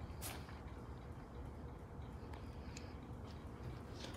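Quiet room tone: a faint steady low hum with a few light clicks.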